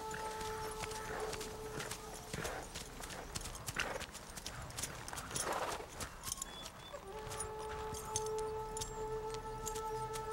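A horse's hooves clopping on dirt as it is ridden up and brought to a stop, with a few louder sounds from the horse in the middle. Sustained film-score notes come back in about seven seconds in.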